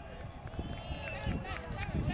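Indistinct voices of several people calling out across an outdoor football pitch, overlapping, with one drawn-out call through most of the stretch.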